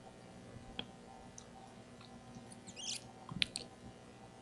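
Quiet room tone with a few faint, sharp clicks, the clearest two close together near the end, and a brief crackle just before them, as of a computer mouse being clicked.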